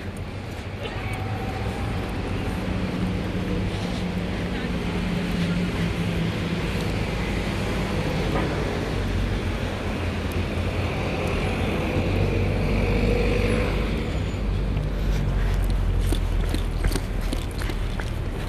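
Road traffic around a car park: a steady rumble of cars idling and passing, with a faint engine hum that comes and goes. A few sharp clicks sound near the end.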